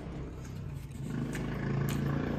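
A man's low closed-mouth "mmm" hum of enjoyment while chewing a mouthful of food. It swells about a second in and is held steady, with a couple of faint mouth clicks.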